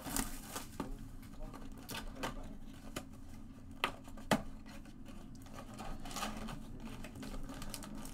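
A cardboard Topps Tribute hobby box being handled and opened by hand: light, scattered taps and clicks of cardboard and packaging, with one sharper knock about four seconds in.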